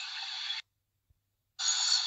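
Thin, tinny match-broadcast sound that cuts out completely about half a second in and comes back about a second later.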